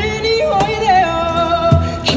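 Live pop-rock band music: a male vocalist sings high, sliding between notes and then holding a long high note, over bass guitar and drums, with a kick-drum thud near the end.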